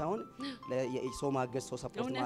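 A man's voice over a microphone with electronic keyboard accompaniment; in the first second the keyboard holds a few bell-like notes that step down in pitch.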